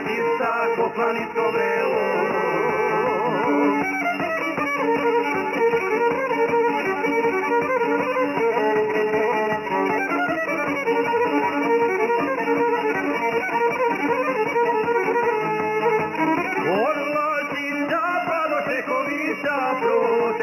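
Serbian traditional (izvorna) folk music: a violin playing the melody over a plucked long-necked lute and a steady rhythmic accompaniment.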